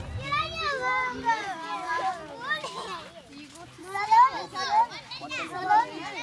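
A group of children chattering and calling out, many high voices overlapping, with a couple of louder shouts near the end.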